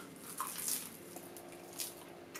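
Faint chewing and wet mouth noises of people eating onigiri rice balls, with a few soft clicks.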